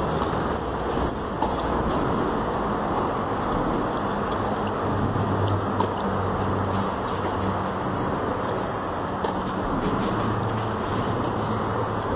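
Tennis rally on a clay court: a racket strikes the ball with a sharp hit about a second and a half in and again near six seconds. Under the hits runs steady outdoor background noise, with a low hum joining about four seconds in.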